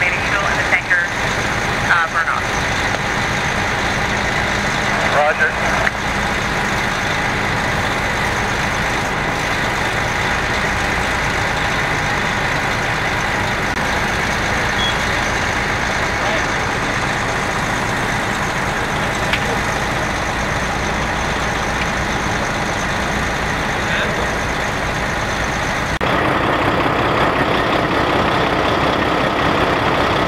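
Fire truck engine running steadily close by. Near the end the din steps up louder.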